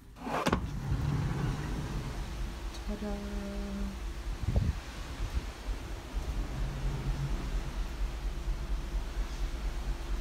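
A sliding balcony door opening, followed by the steady rush of wind and sea outside a cruise ship at sea, with a fluctuating low rumble.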